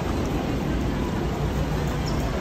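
Steady low rumble of traffic mixed with the murmur of a crowd.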